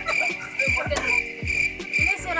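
Background music with a steady electronic kick-drum beat, under a high, pulsing chirp-like tone that continues throughout.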